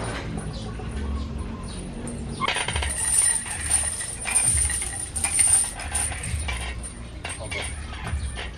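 Steel chains hanging from a loaded barbell clinking and jangling as the bar is pressed, loudest in a few clattering bursts through the middle.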